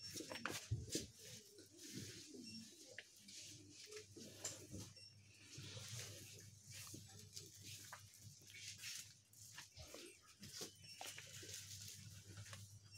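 Faint shop room tone: a low steady hum with scattered small clicks and rustles.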